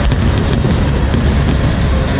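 Fireworks bursting, several sharp bangs over about two seconds, over loud music.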